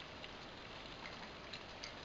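Faint trickle of isopropyl rubbing alcohol being poured from a plastic bottle into a homemade soda-can alcohol stove.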